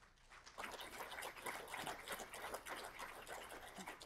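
Audience applauding, beginning about half a second in and thinning out near the end.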